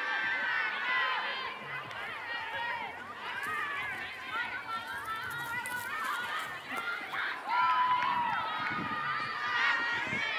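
Several women's voices calling and shouting to each other across an open playing field during play, overlapping and too far off for words to be made out, with one louder, drawn-out call about eight seconds in.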